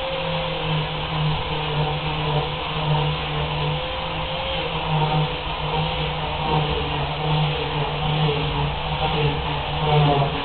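Electric angle grinder running with its abrasive disc against an aluminium sheet, a steady whine whose pitch wavers slightly under a constant grinding noise.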